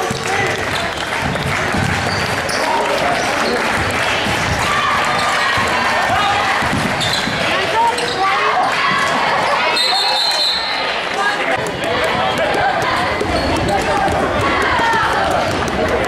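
Basketball game sounds in a gym: a ball dribbling on the hardwood court and players' sneakers among the voices and shouts of players and spectators, with the hall's echo.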